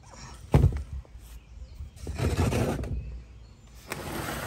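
Handling noises: a single thump about half a second in, then about a second of rustling as a potted petunia is brought up close and moved about.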